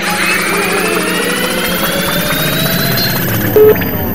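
A transition sound effect: a rising whoosh with several tones climbing together, like a jet swelling past. It ends in a short, loud, low beep near the end.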